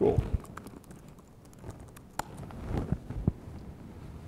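A loud thump followed by scattered, irregular clicks and knocks: handling noise around a laptop at a lectern.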